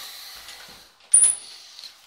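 Chrome flush lever of a Royal Venton toilet cistern being worked: one sharp click about a second in, with a short high-pitched ring after it.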